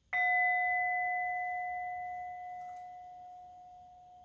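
A small metal singing bowl struck once with a wooden mallet, ringing with several clear steady tones that slowly fade, the higher overtones dying away first while the low tone lingers.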